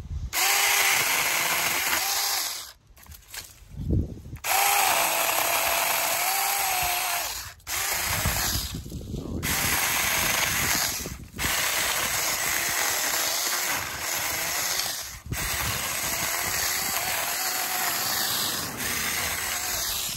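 Saker Mini 4-inch cordless electric chainsaw cutting through the stems of a small tree, run in several bursts with brief stops between. Its motor whine sags in pitch and recovers as the chain cuts through the wood.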